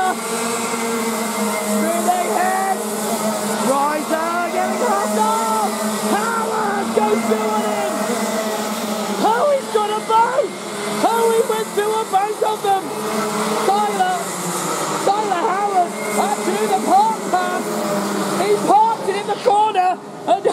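A pack of Rotax Max 125 karts' single-cylinder two-stroke engines revving, many overlapping engine notes rising and falling as the karts brake into and accelerate out of the corners.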